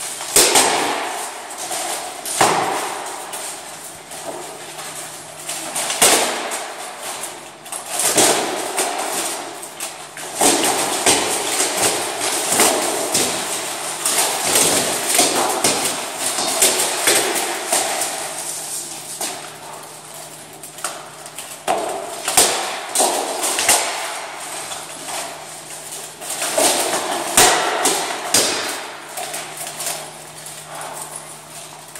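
Armoured sparring: practice swords striking steel plate armour and shields in quick irregular flurries, with the clank and rattle of the plate and the scuffing of steps as the fighters move.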